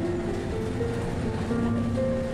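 Background music of slow, held melodic notes over a low, steady rumble.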